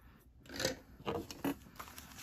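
Soft rustling of paper dollar bills being picked up and handled, with a few faint taps.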